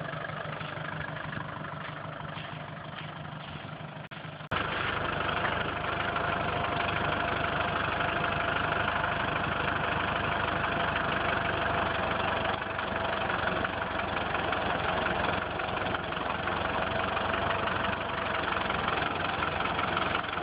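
Land Rover engine running steadily in reverse while a front wheel turns on loose snow and mud. About four and a half seconds in, the sound steps abruptly to a louder, steadier engine-and-drivetrain note with a held whine, heard close under the front axle. Light brake pressure is being applied here so the Truetrac differential sends drive to the front tire that has grip.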